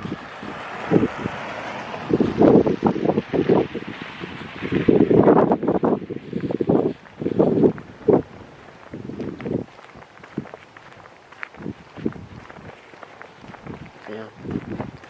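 Wind on a handheld camera's microphone, with irregular rustling and bumps from walking with the camera. It is louder in the first half and quieter after about eight seconds.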